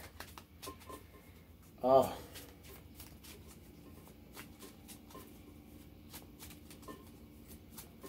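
A deck of oracle cards being shuffled in the hands: a faint, continuous run of quick little clicks as the cards slide and tap against each other.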